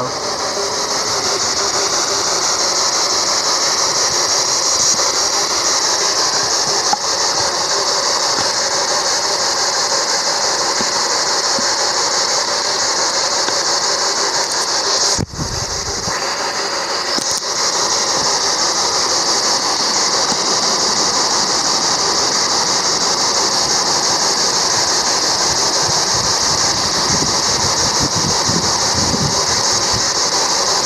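Handheld radio used as a spirit box, giving off a loud, steady hiss of static. It breaks off briefly with a low thump about halfway through.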